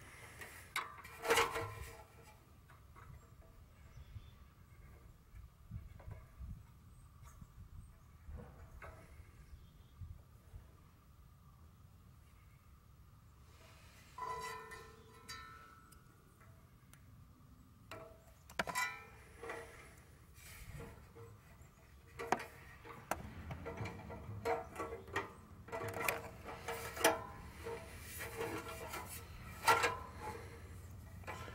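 Scattered light clicks and knocks of a rubber fuel line and inline fuel filter being handled and pushed onto their fittings on a small engine, growing busier near the end.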